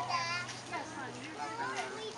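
A group of young children chattering and calling out over one another, their high-pitched voices overlapping, as they scramble for piñata candy on the ground.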